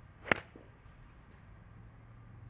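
A golf club swung through and striking a ball off an artificial turf range mat: a brief swish building into one sharp, loud crack about a third of a second in.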